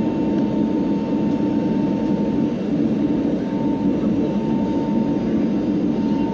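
Airliner turbofan engines heard from inside the passenger cabin during the climb after takeoff: a steady low roar with a faint, steady whine above it.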